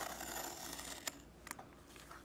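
Craft knife drawn along a metal straight edge through vegetable-tanned leather, a faint scraping hiss for about a second, followed by two light clicks.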